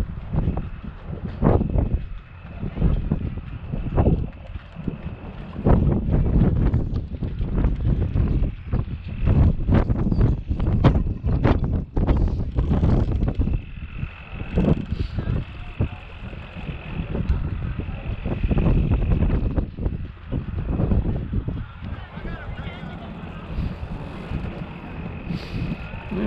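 Wind buffeting the microphone: an uneven, gusting low rumble with frequent knocks and crackles.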